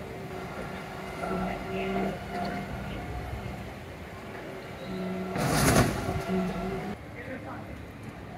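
Refuse collection lorry with a hydraulic crane lifting an underground bin, its engine and hydraulics giving a steady hum that comes and goes. A loud rushing crash about five and a half seconds in lasts about a second and a half.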